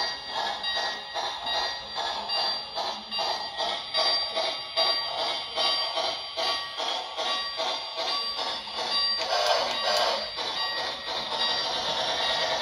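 Lionel Polar Express model train's electronic sound effects: a bell-like ringing over a steady pulse about three times a second, with a louder rush about nine to ten seconds in.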